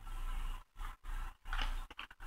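A one-dollar bill rustling and crinkling in the fingers as its corners are folded down and creased, in several short stretches that each cut off suddenly.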